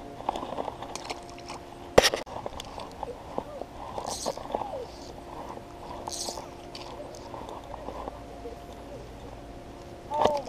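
Rustling and scraping of hands and gear close to a chest-mounted action camera, with one sharp knock about two seconds in.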